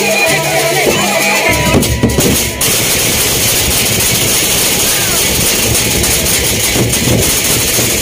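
Gendang beleq ensemble playing: large Sasak barrel drums beaten in a dense, loud rhythm with metallic clashing, over crowd chatter. For the first second and a half a steady melodic tune is heard, which cuts off abruptly as the drumming takes over.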